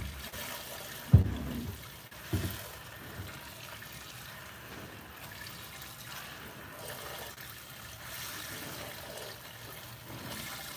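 Hand milking: streams of milk squirting into a plastic five-gallon bucket, a steady liquid hiss. Three short low thumps come in the first few seconds.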